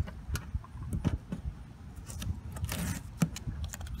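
Tape being peeled off a truck cap's window frame and rubber seal: small crackles and clicks, with a short ripping tear just before three seconds in.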